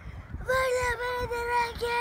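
A child's voice singing one long drawn-out note, steady in pitch, starting about half a second in and broken twice for an instant.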